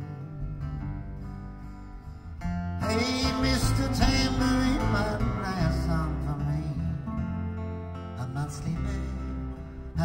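Live band playing an instrumental passage between sung lines: guitars over bass, the music swelling fuller and louder about three seconds in.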